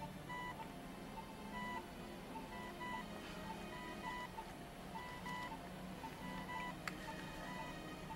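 Quiet background music, a soft held low tone under short, high electronic beeps that come at irregular intervals.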